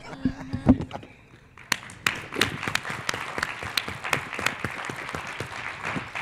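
A brief laugh and a sharp thump, then clapping from the audience and panel that starts about a second and a half in and carries on steadily.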